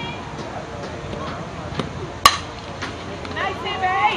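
A softball bat hits a pitched ball with a single sharp crack a little over two seconds in. Spectators start shouting near the end as the ball is put in play.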